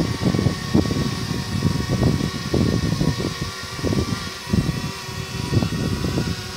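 Small toy quadcopter hovering, its propellers whirring steadily while it carries a paper cup, with uneven low rumbling through the sound.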